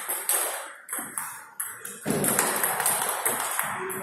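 Table tennis ball rallying: sharp clicks of the celluloid ball off the rubber paddles and the table, roughly two a second. A steady rushing noise in the hall comes up about halfway through.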